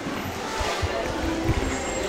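Handheld camera rubbing and bumping against a jacket, heard as irregular low thumps and rumble, with faint voices behind.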